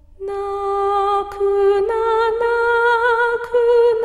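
A woman's voice singing a slow Japanese lullaby in long held notes, coming in about a third of a second in and stepping up in pitch about two seconds in.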